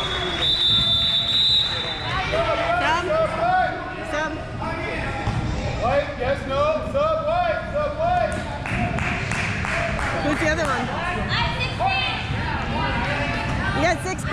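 Players and spectators talking and calling out in a reverberant gymnasium, with a basketball bouncing on the hardwood floor. A steady high tone sounds for the first couple of seconds.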